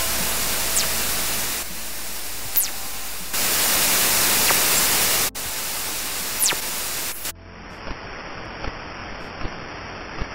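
Radio-telescope signals converted to audio. First comes loud static hiss, crossed three times by brief falling whistles: fast radio bursts, their pitch sweeping down as the higher radio frequencies arrive first. About seven seconds in it changes to quieter hiss with a regular click a little under once a second, the pulses of a pulsar.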